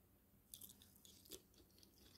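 Near silence with faint chewing of soft food, two small sounds about half a second in and again just past a second.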